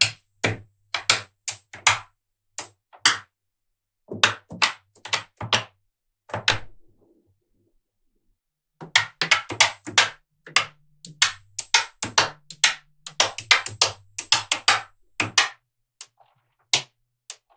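Small magnetic balls clicking sharply as strips and chains of them snap onto a platform of magnetic balls. The clicks are scattered at first, stop for about two seconds in the middle, and then come in a dense run of rapid clicks.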